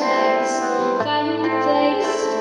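A woman singing a sustained melody over strummed acoustic guitar and electric guitar; the chord changes about a second in, and a low guitar note comes in.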